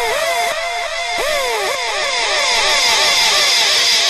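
Dub reggae breakdown with the bass and drums dropped out. An electronic dub-siren tone swoops up and down about twice a second, trailing echoes. Right at the end, steady held instrument notes come back in.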